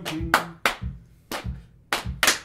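Hand-struck percussion closing out an informal soul song: a held note fades just after the start, then about four sharp, unevenly spaced hits ring out over a low thump.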